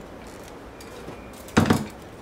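Fiskars scissors making a single short, sharp snip about one and a half seconds in, after quiet room tone.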